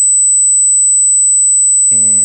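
A steady, piercing high-pitched tone with no change in pitch or level. A man's voice starts just before the end.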